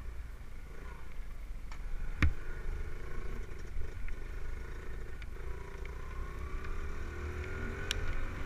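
Dirt bike engine running under way, with a heavy low rumble of wind on the microphone; the engine pitch climbs in the last couple of seconds as it speeds up. A single sharp knock a little over two seconds in.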